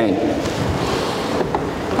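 Steady hiss-like background noise in a pause between words, with the end of a spoken word fading out at the start.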